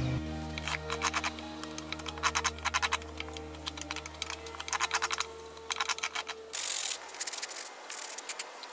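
Short bursts of rapid clicking and scraping as a flat blade is drawn along a row of drilled holes in a pine 2x4, knocking out the splinters. A brief rubbing stroke of a sanding block on the wood comes near the end.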